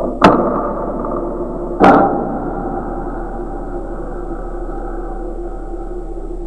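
Dark soundtrack drone with steady sustained tones, struck by two sharp impact hits about a second and a half apart, each ringing out and fading; the first is the loudest.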